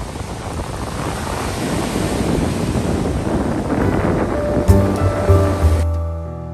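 Ocean surf washing onto a sandy beach, a steady rushing noise. Piano music with deep bass notes comes in over it about four and a half seconds in.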